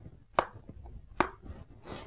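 Two sharp snaps about a second apart, with a fainter one near the end: the press studs of a motorcycle helmet's cheek pad being pushed home into the shell.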